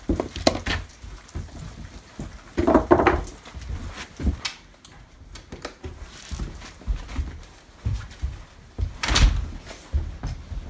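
Split firewood knocking and thudding as armloads are carried in by hand, with footsteps and a door. There are two heavier clunks, about three seconds in and near the end.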